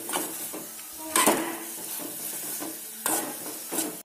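Sliced mushrooms frying in oil in a metal pan, sizzling, as a spatula stirs them in with turmeric. There are a few louder scrapes of the spatula against the pan, about a second in and again near the end.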